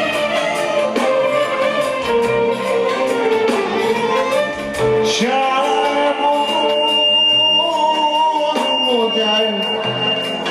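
A singer singing live into a microphone over a band accompaniment. A long steady high note is held through the second half.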